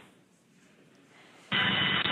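Space-to-ground radio channel keying up about one and a half seconds in: a sudden burst of static hiss with a steady high tone, coming out of near quiet.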